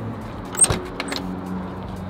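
Sharp click from a Hummer H1's door handle and latch as the driver's door is opened, with a couple of lighter clicks after it, over a steady low hum.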